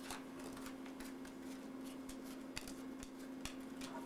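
Playing cards being dealt onto a wooden table: faint, irregular soft flicks and taps, over a steady low hum.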